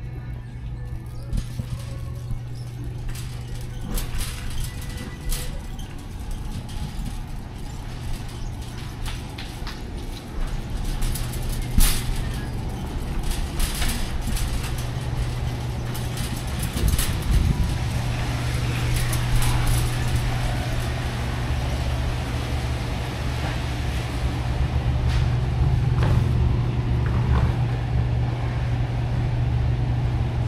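Warehouse-store ambience while a wire shopping cart is pushed along: a steady low hum that grows louder past the halfway mark, scattered clicks and rattles, and music in the background.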